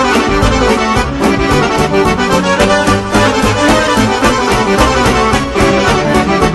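Instrumental break of a Bosnian folk song, an accordion carrying the melody over a steady bass beat.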